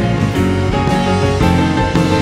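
Live rock band playing: electric piano chords with electric guitar, bass guitar and drums.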